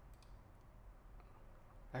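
A few faint, scattered clicks of a computer mouse as presets are selected.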